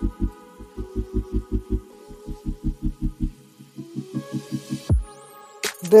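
Background music: a fast, steady low pulse of about four or five beats a second under held notes. The pulse drops out a little past three seconds, and a falling sweep and a rising whoosh come in near the end.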